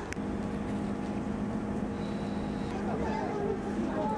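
A steady low mechanical hum, with a sharp click just after the start and faint voices near the end.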